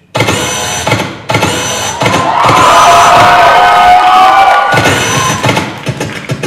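A beat-driven dance track cuts in suddenly from silence, stopping briefly twice. About two seconds in, an audience cheers and shouts loudly over it for a couple of seconds, the loudest part, before the beat carries on.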